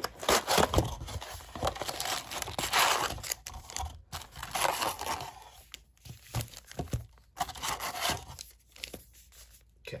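Wrapping torn off a cardboard trading-card hobby box, then the box opened and its foil card packs lifted out, crinkling and rustling in irregular bursts, busiest in the first few seconds.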